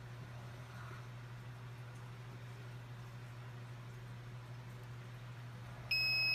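A steady low hum with faint room noise, then, right at the end, the heat press's control panel starts a loud, steady high-pitched electronic beep as its countdown timer reaches zero.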